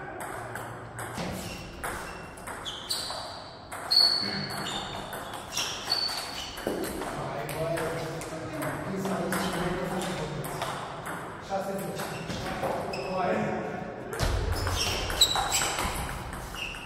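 Table tennis rallies: the plastic ball clicking sharply off rubber rackets and the table top, in quick exchanges broken by short pauses between points.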